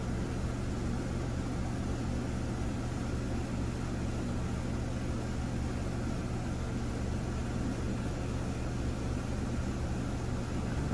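Steady low electrical or mechanical hum with even hiss, unchanging throughout; no distinct tool clicks stand out.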